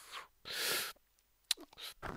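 A man's short, sharp, noisy burst of breath about half a second in, after a drawn breath, followed by a small click.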